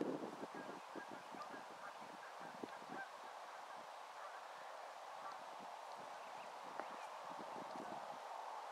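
A blue grouse giving a run of soft, low clucks, several a second, that thin out after about three seconds.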